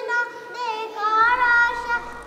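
Young girls singing a Bangla gojol, an Islamic devotional song, together in high voices with long held notes.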